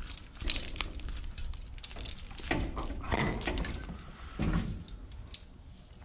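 Raccoon hide being pulled down off the hind leg with a steel skinning rod: scattered rustles and sharp clicks as the skin separates, with light metallic clinks.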